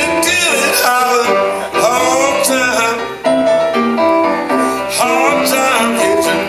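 A small live band playing a song: electric keyboard, guitar and electric bass, with a man singing over it.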